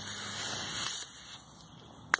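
Hiss of pressurised gas escaping from a plastic bottle of fizzy lemonade just punctured with a screw, dying down after about a second.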